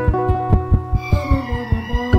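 Neotango instrumental music: guitar and sustained pitched notes over a low, regular throbbing pulse.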